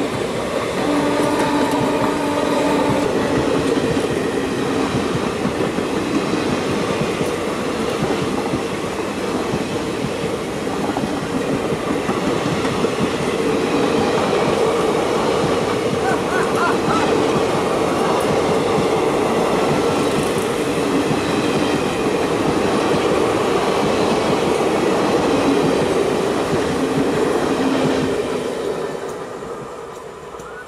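Passenger train coaches running past close by, with steady heavy wheel-and-rail noise. Near the end the last coach clears and the noise falls away.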